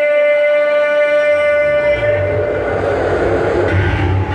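Live band music: one long held note, steady in pitch, with a deep bass line coming in about halfway through.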